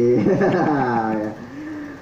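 A man's drawn-out, sing-song "iiih" exclamation, its pitch bending and sliding down over about a second before trailing off: an affectionate reaction to how small the child is.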